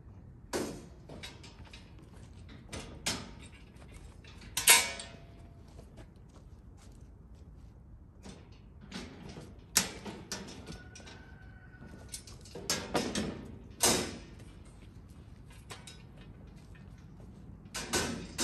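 Metal side panels being lifted off a heavy-duty four-wheel garden cart to turn it into a flatbed: a series of separate metal clanks, rattles and scrapes. The loudest knock comes a little under five seconds in.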